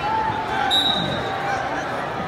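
Spectators chattering in a school gymnasium, with a short, high-pitched referee's whistle blast about a second in, as a wrestling bout gets under way.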